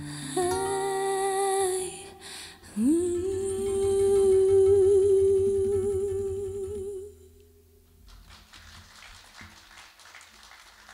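A woman's voice sings a wordless closing phrase over acoustic guitar, ending on a note that slides up and is held with vibrato for about four seconds. The note fades out about seven seconds in, leaving only faint sound.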